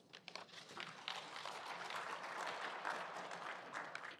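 Faint audience applause, many hands clapping, swelling about a second in.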